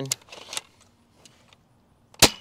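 A few light plastic clicks and a brief rattle about half a second in, from the Adventure Force Nexus Pro foam dart blaster being handled between shots.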